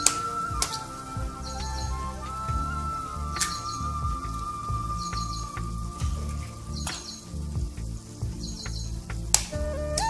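A metal spoon tapping raw eggshells to crack eggs over a frying pan: four sharp taps, about three seconds apart, over background music with a long held note.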